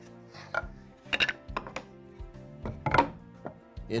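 Background music with several sharp knocks of pine blocks and boards being set down and shifted on a wooden workbench, the loudest about three seconds in.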